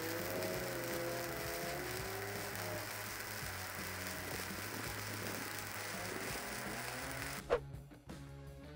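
Stick-welding arc on a steel pipeline joint, crackling and hissing steadily as the electrode runs a filler pass; the arc sound cuts off near the end.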